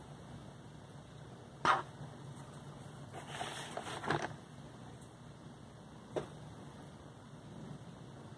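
Faint handling noises as a painting is set aside and another picked up: a knock about two seconds in, a rustling scuffle around three to four seconds, and a short click near six seconds.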